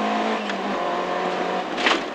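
Peugeot 205 GTi 1.9's four-cylinder engine running at steady revs, heard from inside the cabin over road noise. The engine note dips slightly under a second in, and a brief noisy burst comes near the end.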